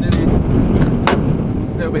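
Heavy wind buffeting the microphone, a dense irregular low rumble. About a second in there is one sharp metallic click as the excavator's side access panel is unlatched and swung open.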